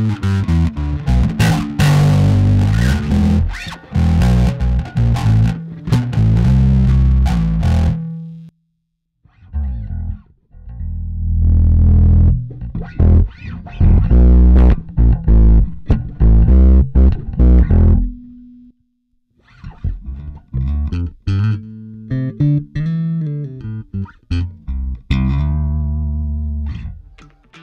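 Electric bass playing the same simple riff over and over through an effects pedal chain, in three passes with two short breaks about a third and two-thirds of the way through; the last pass is less bright than the first two.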